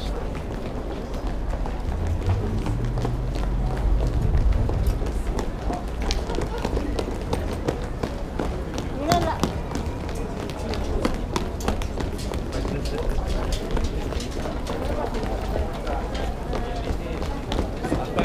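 Running footsteps of a group of bandsmen, boots tapping quickly and unevenly on a hard concrete floor, with voices around them and a low rumble throughout.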